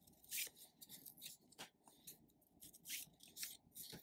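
Faint, short rustles and brushes of paper playing cards being handled: a card slid off a small deck and laid down on a table.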